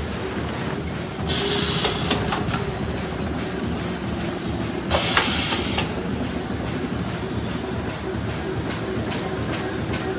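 GH-400X2 double-channel automatic garbage bag making machine running with a steady mechanical noise and scattered clicks. Two bursts of hissing come from it, about a second and a half in and again about five seconds in.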